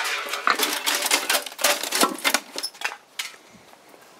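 Rapid clattering and rattling of thin sheet metal as a smashed toaster and stereo casing are handled and set down. The clatter dies away about three seconds in.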